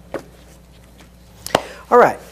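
Two sharp taps on a lectern about a second and a half apart as papers and a book are handled on it, over a low steady hum. A man's voice starts at the very end.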